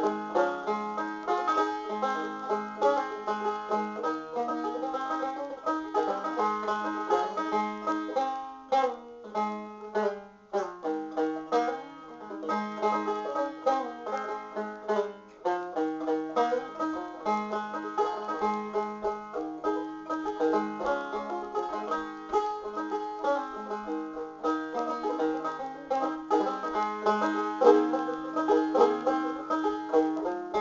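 Epiphone MB-200 five-string banjo with an aluminium pot, played solo: a steady stream of picked notes in an old-time tune. There is a brief thinner passage about ten seconds in.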